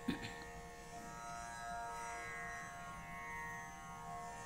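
Faint, steady Carnatic drone accompaniment: a cluster of held, unchanging tones that swells slightly in the middle, with a small click just at the start.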